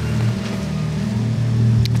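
A steady low droning hum, with one short click near the end.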